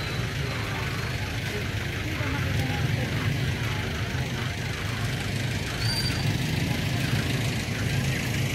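Steady rain falling on an umbrella held just overhead: an even hiss with a low rumble underneath.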